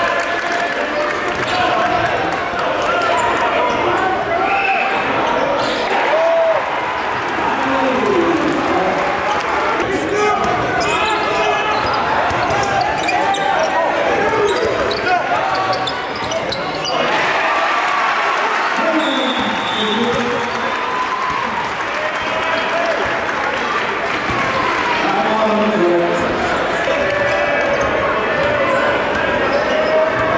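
A basketball being dribbled on a hardwood gym floor, with a crowd of voices chattering and shouting in the gym around it.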